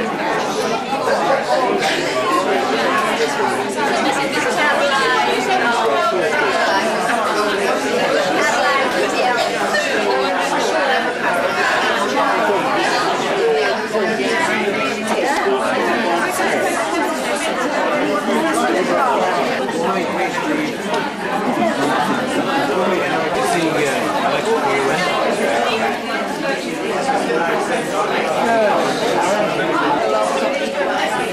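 Many people talking at once: a steady hubbub of overlapping conversation with no single voice standing out.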